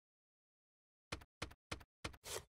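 Three short, sharp percussive knocks about a third of a second apart, starting about a second in: the opening hits of a logo intro sound sting.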